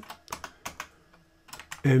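Computer keyboard typing: several separate keystrokes.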